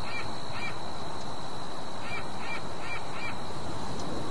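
Short bird calls, two close together at the start and four more in quick succession about two seconds in, over a steady hiss of outdoor noise and a thin, high, steady tone.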